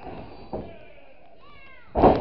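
A short high-pitched cry that falls in pitch, about a second and a half in, comes after a lighter thump near the start. At the very end a wrestler slams onto the ring mat with a loud, sudden thud.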